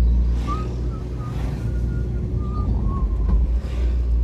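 Steady low rumble of wind and engine noise from a vehicle travelling along a road, with a few faint, short, wavering whistle-like tones above it.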